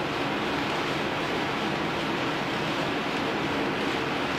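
Gym exercise machine in use, a steady even rushing noise with no distinct beat.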